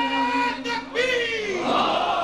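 A man's voice holding a long sung note of a manqabat recitation, which breaks off about half a second in. A new sung phrase starts about a second in, and near the end a crowd of men's voices calls out together.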